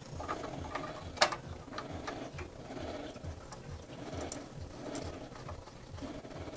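Small clicks and taps of a hard 3D-printed plastic tensioner part and metal hardware being handled and fitted, the sharpest click about a second in.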